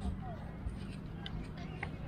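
A few light clicks from a bicycle rear-dropout stabilizer being fitted and clamped between the frame's rear dropouts, over a steady low background rumble.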